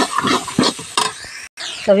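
A metal spoon scraping and stirring spices frying in oil in a metal kadhai, in quick repeated strokes with a light sizzle. The sound cuts out abruptly about one and a half seconds in.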